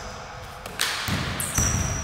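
Basketball thudding on a hardwood gym floor after a jump shot: two low thuds about half a second apart in the second half, over a rustle of players moving on the court.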